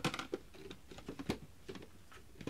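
A quick, irregular run of clicks and light rattles from small plastic makeup items being picked through and handled. The loudest click comes right at the start.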